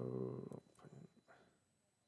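A man's drawn-out hesitation sound, like a held "sooo" or "um", which ends about half a second in. A few faint computer mouse clicks follow, then near silence.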